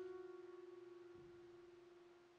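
Background piano music: one held note dying away, fading steadily to near silence.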